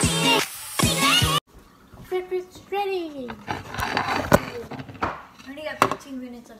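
Background music that cuts off suddenly about a second and a half in. After it, quieter voice sounds with falling pitch glides, and two sharp knocks near the end.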